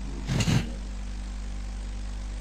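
Steady low electrical hum and hiss on a voice-chat audio line, with one short vocal sound about half a second in.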